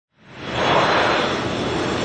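Twin-engine jet airliner on approach with its landing gear down: a steady rush of engine and air noise, with a faint high whine, fading in over the first half second.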